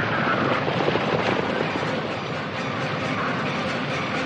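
Many galloping horses and rolling horse-drawn wagons together make a thick, continuous rumble of hoofbeats and wheels.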